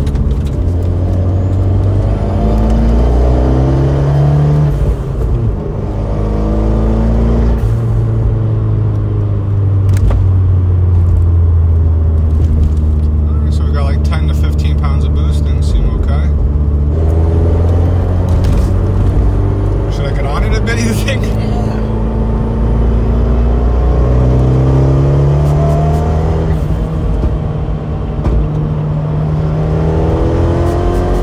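Fiat 124 Spider Abarth's turbocharged 1.4 L MultiAir four-cylinder pulling hard from inside the cabin, the revs climbing and dropping back through gear changes. Boost keeps cutting out around 27 psi on these pulls, which the driver calls boost dumping.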